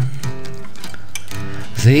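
Acoustic guitar playing a few ringing notes in the pause between sung lines of a slow folk song. A singing voice comes back in near the end.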